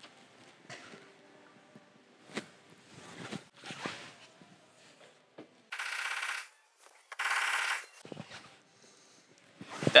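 A few light clicks and taps, then two hisses of just under a second each from a spray bottle of isopropyl alcohol, used to loosen and wipe off the glue residue left by the pulling tab on the steel panel.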